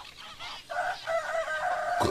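A rooster crowing: a few short calls, then one long held note from under a second in.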